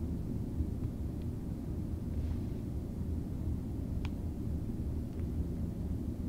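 Steady low background rumble, with a few faint, sparse keyboard clicks as code is typed.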